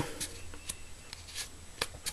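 Comb raked through a clump of deer hair to strip out the underfur: a few faint, short strokes at irregular intervals.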